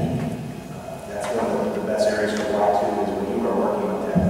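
Only speech: a man talking.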